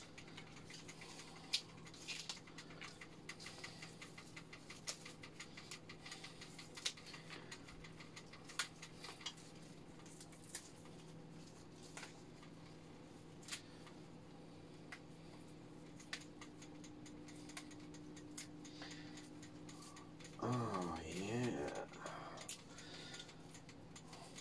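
Celery stalks being cut up over a pot: a long run of small, crisp clicks and snaps, thinning out after about two thirds of the way through, over a steady low electrical hum. A brief hummed or muttered voice comes near the end.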